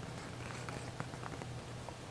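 Fingers rubbing the thick, ridged, leathery leaf of an Anthurium luxurians, making faint scattered scratches and small ticks over a low steady hum.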